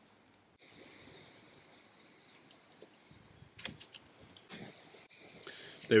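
Small hand ratchet tightening the clamp bolt on a gearbox cooler take-off fitting, drawing the fittings' O-ring seals down into the ports. It makes faint ratchet noise, with a few sharp clicks in the second half.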